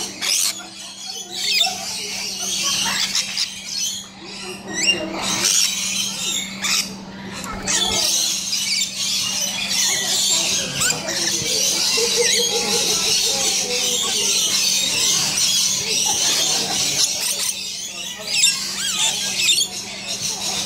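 A flock of rainbow lorikeets screeching and chattering without pause, a dense high-pitched din of overlapping calls, over a steady low hum.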